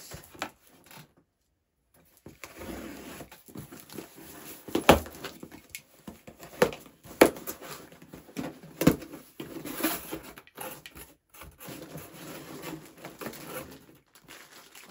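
Cardboard box being opened and rummaged through: scraping and rustling with several sharp knocks, the loudest about five, seven and nine seconds in.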